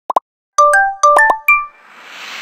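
Animated logo intro sound effect: two quick pops, then a run of about six bright chime-like notes, each ringing briefly. A soft whoosh begins near the end.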